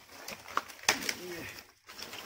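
A few sharp clicks and knocks of dry sticks in a woodpile being disturbed, the loudest about a second in, followed by a short low call that rises and then falls in pitch.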